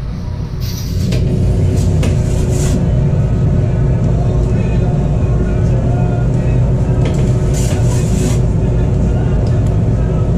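A steady low mechanical rumble, like a running engine or generator, with a faint steady hum over it. It gets louder about a second in and then holds even.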